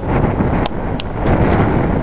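Wind buffeting the microphone, a steady low noise, with two short clicks, one at about two-thirds of a second in and one at about a second in.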